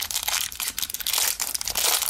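Thin plastic shrink-wrap crinkling and tearing as it is peeled by hand off a sealed starter deck of trading cards, in a dense, continuous run of crackles.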